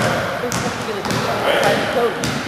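Basketballs bouncing on a hardwood gym floor as children dribble, with sharp irregular bounces about every half second. Children's voices chatter in the background of the echoing hall.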